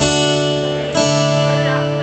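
Acoustic guitar chords strummed twice, about a second apart, each left to ring.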